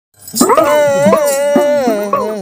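An elderly man's voice starting a song with one long, wavering, held 'aaah', with a few sharp percussive taps beneath it.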